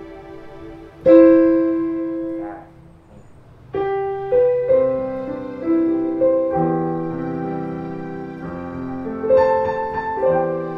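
Yamaha Clavinova CLP-430 digital piano playing its piano voice layered with strings: one chord about a second in that fades away, then from about four seconds in a slow passage of long, overlapping held notes.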